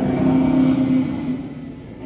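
A Radiator Springs Racers ride car speeding past on the track. There is a rushing sound with a steady hum that starts suddenly and fades away over about a second and a half.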